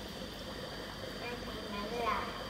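Air bubbling steadily through a homemade aquarium biofilter jar driven by a small 3 W single-outlet air pump, a continuous trickling, gurgling water sound that is running strongly.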